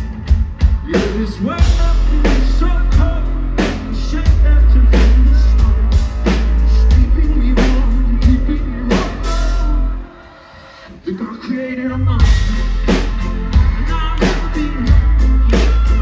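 Live rock band playing loudly: a pounding drum kit and heavy bass under a male singer. About ten seconds in the band cuts out for roughly two seconds, then crashes back in.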